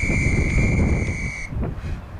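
Interval timer sounding one long, steady electronic beep that cuts off about a second and a half in, the signal marking a switch between tabata work and rest intervals. Wind buffets the microphone throughout.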